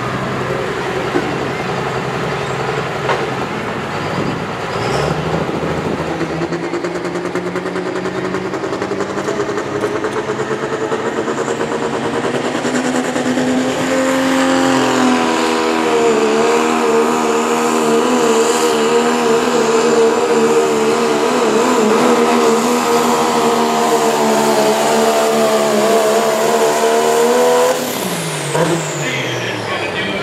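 Cummins turbo-diesel in a second-generation Dodge Ram pulling truck, revving up and then held at high revs under load as it drags the weight sled, its pitch wavering slightly. Near the end the throttle comes off, and the engine and a high whistle wind down together.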